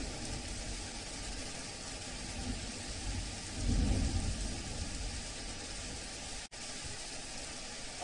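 Steady hiss of rain falling on a street, with a low rumble swelling briefly about halfway through.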